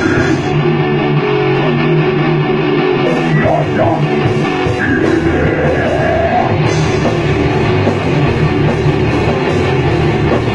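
A heavy metal band playing a song: distorted electric guitars, bass guitar and a drum kit. The cymbals drop out for a couple of seconds near the start.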